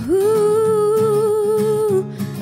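A young woman's voice holding one long sung note, sliding up into it at the start, over acoustic guitar chords.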